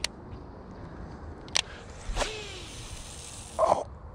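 Baitcasting reel casting with its brakes left turned down to one: a click, then the spool spinning and line hissing off for about a second and a half, and a short louder noise near the end. The spool is overrunning, the cause of a bad backlash.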